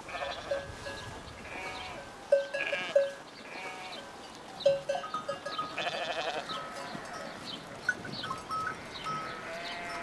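A flock of sheep bleating, many short calls overlapping.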